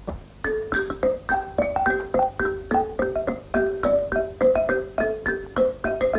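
A small wooden xylophone struck with mallets, playing a simple tune of short notes, about four a second.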